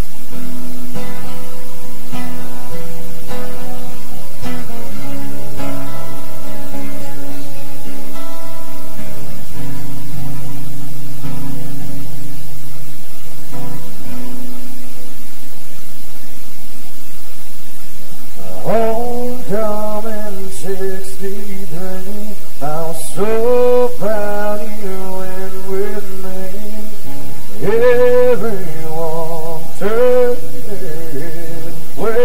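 Two acoustic guitars playing a country song's intro, with a man's singing voice coming in about two-thirds of the way through.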